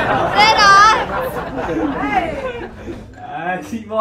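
Young people chattering and laughing, with a high-pitched wavering squeal of voice about half a second in.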